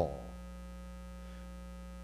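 Steady electrical mains hum with a ladder of evenly spaced overtones, a constant buzzing drone from the sound system.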